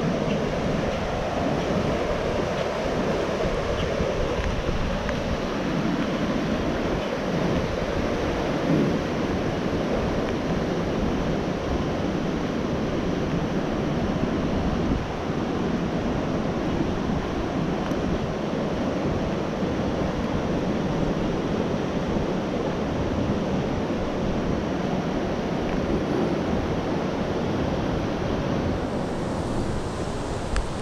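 Water rushing down a dam spillway: a steady, unbroken rushing noise.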